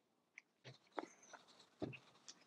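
Quiet workbench handling noises: a few light clicks and knocks as small brake parts and a pump spray bottle are handled on a stainless steel bench, with a heavier thump near the end as the bottle is set down.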